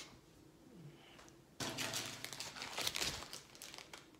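Plastic wrapper of a Snickers bar crinkling and rustling for about two seconds as the bar is stuffed into a pocket.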